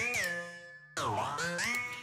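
A synthesizer line whose pitch bends: a held note fading away, then about a second in a new note that dips and slides back up in pitch.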